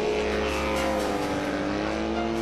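Light autogyro flying overhead, its engine droning steadily, with a tone that slowly falls in pitch as it passes.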